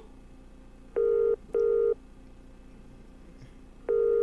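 Telephone ringing in a British-style double ring: two short, steady tones about a second in, then the next pair starting near the end, about three seconds after the first.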